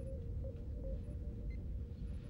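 Starship bridge background ambience: a steady low rumbling hum with a held tone, and a few faint short electronic tones.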